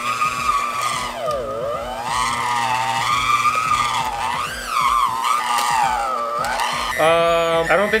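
Electric hand mixer motor whining as its beaters churn a thick clump of chocolate cookie dough, the pitch sagging and picking up again several times as the motor labours under the load. The dough is too thick, clumping around the beaters.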